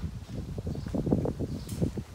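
Irregular low knocks and rustling from footsteps and a handheld phone being carried.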